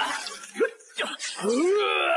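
A man groaning and wailing in strain: a few short cries, then a long drawn-out cry with falling pitch starting about a second and a half in.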